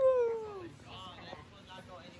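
The tail of a person's long "woo!" shout, falling in pitch and fading out within the first second. Faint voices follow in the background.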